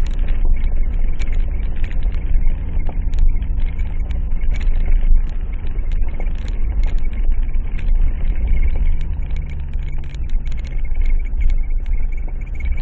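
A vehicle's engine running steadily at low revs, heard from inside the cabin, with frequent rattles and knocks as it jolts over a rough gravel track. The engine note shifts slightly about three-quarters of the way through.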